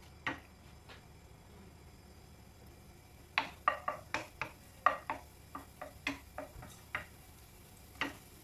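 Wooden spatula stirring minced garlic in oil in a nonstick frying pan, knocking and scraping against the pan. Two knocks just after the start, a quiet pause of about two seconds, then a run of quick taps and scrapes, two or three a second, from about three seconds in to about seven.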